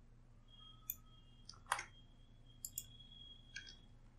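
A few faint, sharp computer mouse clicks, the loudest a little under two seconds in.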